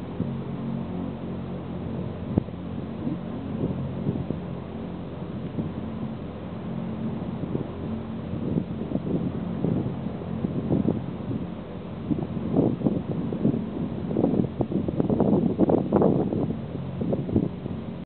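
Vertical-axis wind turbine running, its large chain-rimmed base wheel and drive giving a steady low mechanical hum. Wind buffets the microphone in gusts, stronger in the second half.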